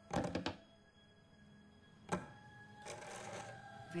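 A quick cluster of sharp taps near the start and a single sharp click about two seconds in, over a faint steady hum, in a film's soundtrack.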